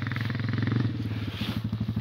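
Honda sport ATV's single-cylinder four-stroke engine running at low revs, with a steady, even pulse.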